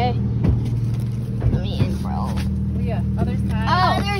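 A car engine idling with a steady low hum, over which voices are heard briefly.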